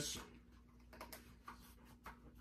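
Near-quiet room with a faint steady hum and a few faint, light clicks from a paper card being handled.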